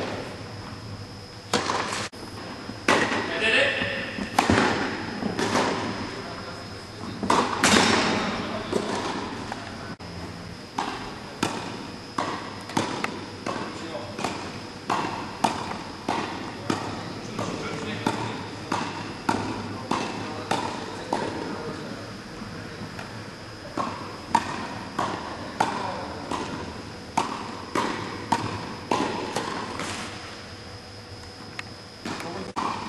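Tennis rackets hitting a ball back and forth in a fast volley exchange, each strike sharp with a short echo off the hall. The strikes settle into an even rhythm of about three every two seconds after the first third.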